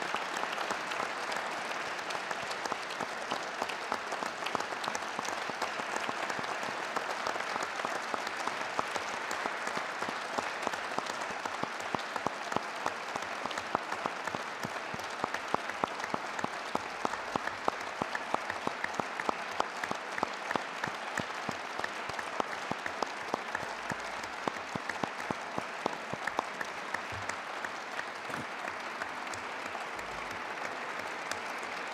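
Sustained applause from a large seated audience: many hands clapping steadily, with single sharp claps standing out from about ten seconds in.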